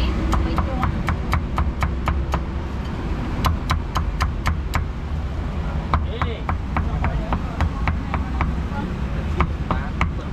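A cleaver chopping pork in quick, even strokes, about four a second, in three runs with short pauses between them.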